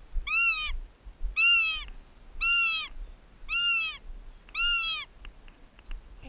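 Goshawk calling: five high, wailing calls about a second apart, each rising and then falling in pitch.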